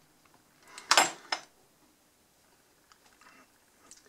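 A kitchen knife knocking and scraping briefly on a bamboo cutting board about a second in, as a soft black garlic clove is cut, followed by faint handling sounds.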